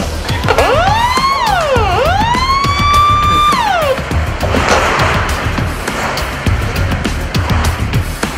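A siren wails, rising and falling twice, during the first half, over music with a driving beat.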